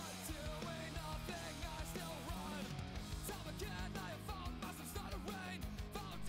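Background rock music with singing, playing quietly.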